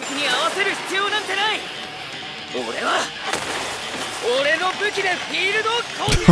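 Anime soundtrack: a male voice actor delivering intense Japanese dialogue in several shouted phrases over background music and match sound effects.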